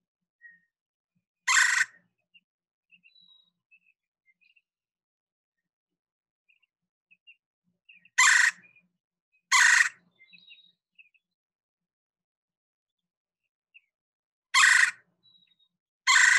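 Red-bellied woodpecker giving a very loud, harsh "churr" call four times: once near the start, twice close together about eight seconds in, and once near the end. Faint chirps sound in between.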